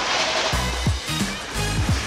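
Background music with a steady kick-drum beat and bass line, over the rush of wind and sea.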